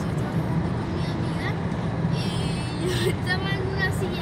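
Steady road and engine rumble inside a moving car's cabin at highway speed. Voices are heard faintly over it in the second half.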